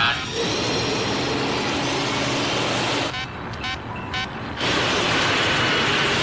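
A powerboat at full throttle: a dense, steady engine-and-water roar. It drops away for about a second and a half partway through, then comes back just as loud.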